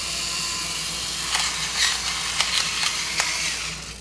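Amusewit battery-powered electric pepper grinder running for nearly four seconds: a steady small-motor whir with scattered sharp cracks as the peppercorns are ground, stopping near the end.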